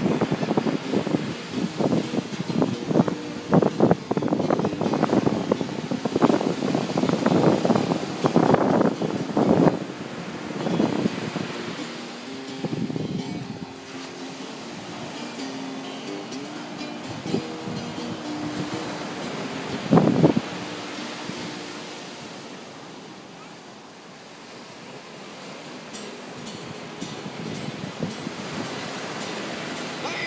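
Ocean surf breaking on a beach with wind buffeting the microphone, loudest and gustiest through the first ten seconds. Music with a few held notes comes through faintly in the middle, and there is one sharp loud thump about twenty seconds in.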